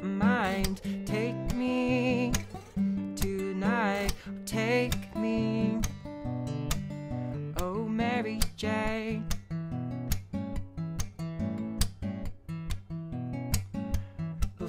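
Acoustic guitar played with picked notes and chords in a steady rhythm, with wordless sung notes over it near the start, about four seconds in and about eight seconds in.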